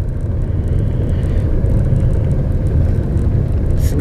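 Car driving along a town street, heard from inside the cabin: a steady low rumble of engine and tyre noise.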